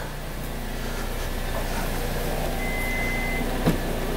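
Steady room noise of a large indoor showroom with a low hum. A short, steady high beep lasts under a second just past the middle, and a single click comes near the end.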